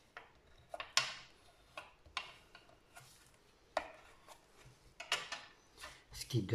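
Paper and card being handled and pressed down by hand on a plastic cutting mat: a string of irregular soft taps, rubs and paper rustles, about two a second.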